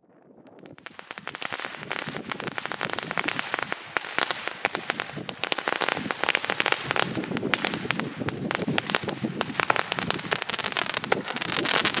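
Nico 'Unicorn Impressions' 25-shot fireworks cake firing: a dense, continuous crackling and popping that builds up over the first couple of seconds and keeps going as it shoots comets into the air.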